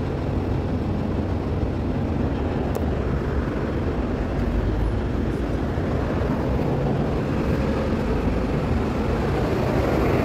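Steady low rumble of road traffic passing close by, growing slightly louder near the end as a vehicle approaches.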